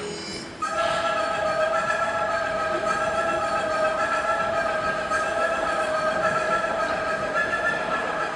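Train sound effect in a dance routine's soundtrack, played over the hall's speakers. A held chord of several steady tones over a rushing hiss starts about half a second in and runs on unchanged.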